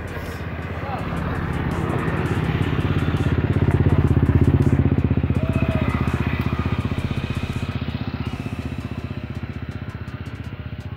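A motorcycle engine passing by, its fast, even putter growing louder to a peak about halfway through and then fading away.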